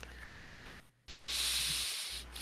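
Faint steady hiss of open-microphone background noise on a video call. It cuts out briefly about a second in, then comes back a little louder.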